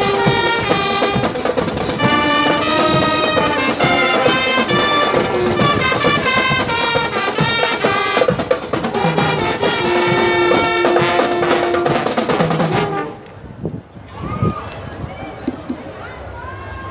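Martial fanfare band of trumpets, trombones, euphoniums and drums playing a loud piece with long held brass notes over the drums. The music stops about 13 seconds in, and a few faint voices follow.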